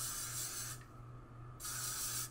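Aerosol can of hairspray spraying in two bursts: the first about a second long, the second starting about one and a half seconds in.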